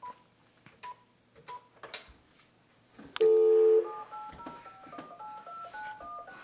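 Corded landline telephone: a few faint short beeps, then the dial tone sounds loudly for about half a second, three seconds in, and is followed by a quick run of touch-tone keypad beeps as a number is dialled.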